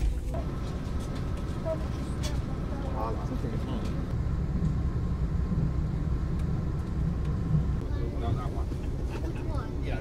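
Steady low rumble of a passenger train running, heard from inside the carriage, with faint passengers' voices.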